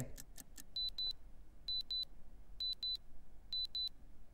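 Electronic countdown sound effect: a few faint ticks, then four pairs of short, high beeps, about one pair a second, marking the close of a timed auction.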